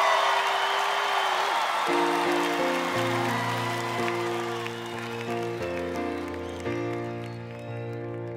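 Studio audience cheering and applauding with whoops, dying down as a grand piano starts playing slow, sustained chords about two seconds in.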